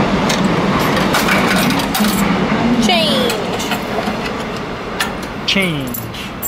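Coins dropping out of a drinks vending machine's change return, a series of sharp metallic clinks as the coin-return lever is pressed, over a steady low background hum.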